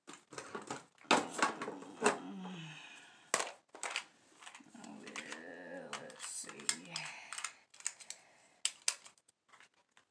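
Makeup containers and packaging being rummaged through and handled on a table: a string of clicks, taps and crinkling, with a soft low voice mumbling in between.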